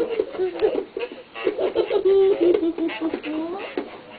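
Small children babbling and vocalizing without words: short rising and falling sing-song sounds, on and off.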